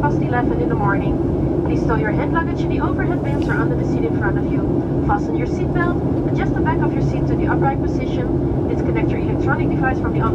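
Steady cabin drone of a Boeing 737-900 in cruise or descent, heard from inside the cabin: its CFM56-7B turbofans and the airflow over the fuselage make an even roar with a low hum. Voices are heard over it.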